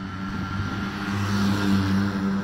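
A small motor vehicle passing close by, its engine running with a steady low hum. The engine and road noise swell about a second and a half in as it goes past.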